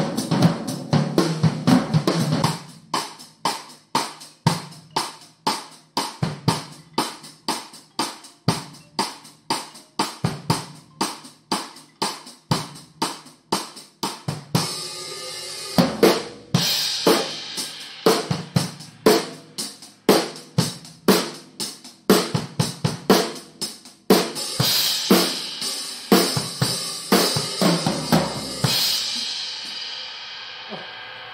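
Acoustic Yamaha drum kit with Sabian cymbals being played. A steady beat of evenly spaced strikes runs through the first half. From about halfway the cymbals come in heavier, with a run of crashes in the last few seconds that ends on a ringing cymbal.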